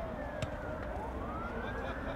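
Wailing emergency-vehicle siren, its pitch sliding down to its lowest about half a second in and then rising slowly again. A single sharp knock comes just before the low point.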